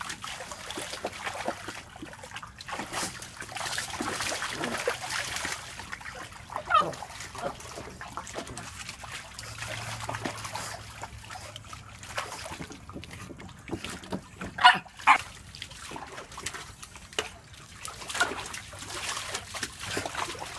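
Pug pawing and splashing the water in a plastic paddling pool, with a few short dog vocal sounds. The loudest two come close together about three-quarters of the way through.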